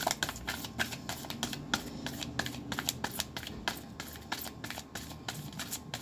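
A deck of oracle cards being shuffled in the hands: a quick, uneven run of card flicks and slaps, several a second.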